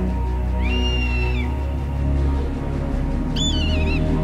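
Film score of low held notes, with two high animal cries laid over it: one about half a second in that rises, holds and falls, and a shorter one near the end that wavers downward.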